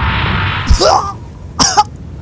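Cartoon fight sound effects: a steady rushing whoosh cuts off, then a sharp hit with a short vocal grunt about two-thirds of a second in, and a second hit with another strained cry a second later.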